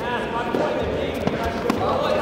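Voices calling out in a sports hall, with two sharp thuds from the kudo bout in the second half, one close after the other.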